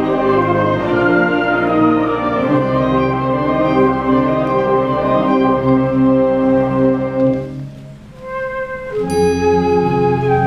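School wind ensemble playing held chords, with clarinets, saxophones and flutes. The sound drops to a soft passage about three-quarters of the way through, then the full band comes back in with a bright high note near the end.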